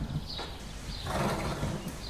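Stable sounds: a horse shifting in its stall and blowing out a noisy breath about a second in, while short high chirps, like small birds, repeat throughout.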